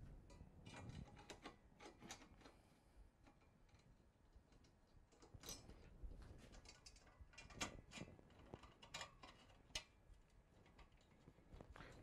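Faint, scattered metallic clicks and ticks of a hex key turning bolts and nuts on an aluminium extrusion frame, in two short spells with near silence between; the bolts are being snugged lightly, not fully tightened.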